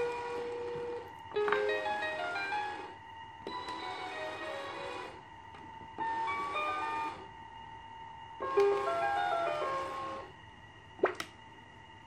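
Children's 8-key water-music toy keyboard playing short electronic jingles as its mode buttons are pressed: four separate quick runs of beeping notes, each lasting one to two seconds, with a faint steady whine underneath. Two sharp clicks come near the end.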